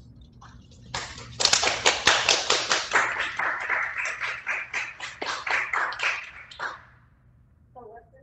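Applause, a dense patter of clapping hands that starts about a second in and dies away near the end.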